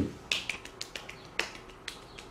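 Fingers snapping in a quick, uneven series of about eight sharp snaps.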